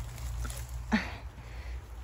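Dry leaf litter rustling as it is disturbed by hand and underfoot, with one short, louder rustle about a second in, over a steady low rumble on the microphone.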